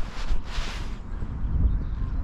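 Wind buffeting the microphone, a steady low rumble, with a brief hiss about half a second in.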